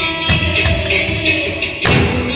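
Recorded Carnatic dance music for Bharatanatyam: held melodic tones over percussion, with a bright jingle running through it. Two sharp strikes land, one just after the start and one near the end.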